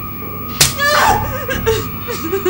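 A sharp slap lands about half a second in, followed by a high, wavering cry.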